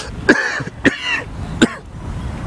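A man coughing three short times into his fist, about half a second apart, while overcome with emotion.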